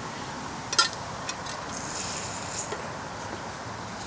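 Small handling noises of a soldering iron and solder wire over an aluminium pan: one sharp tick about a second in, then a few lighter ticks over a steady background hiss.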